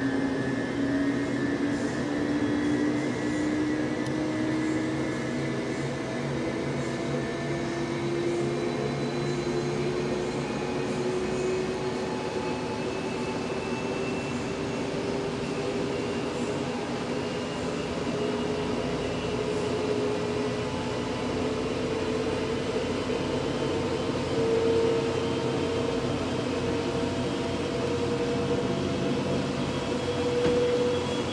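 MAHA chassis dynamometer rollers being spun up by the dyno's drive motor for a coastdown calibration, with no vehicle on them. It is a steady whine made of several tones that rise slowly in pitch as the rollers accelerate toward the 22 mph second test speed.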